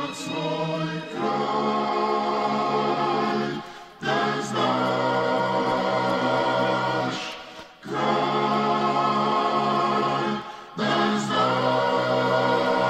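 Music: a choir singing long held chords, in phrases of about three to four seconds with short breaks between them.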